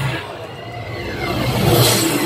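A rising sweep effect in a dance performance's backing track over the PA. The music breaks off, and a whoosh climbs in pitch and loudness for about a second and a half, peaking as the music comes back in.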